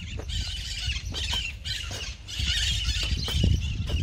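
A hoe chopping into loose, plowed sandy soil in a few irregular strikes, with wind rumbling on the microphone.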